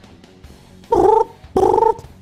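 A man imitating a British phone line's double ring with his voice: one pair of short buzzing rings about a second in.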